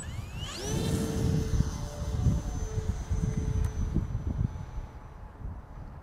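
Electric motor and propeller of an E-flite Air Tractor 1.5m RC plane spooling up to full throttle for a stall takeoff: a whine that rises sharply in the first second, then holds steady and high over a low rumble as the plane climbs away, fading toward the end.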